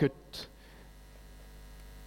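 Faint steady electrical mains hum, with a brief soft noise about half a second in.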